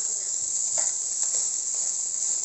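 Fried rice sizzling in a hot wok, heard as a steady high hiss, while it is tossed with metal and wooden spatulas, with a few light scrapes against the pan.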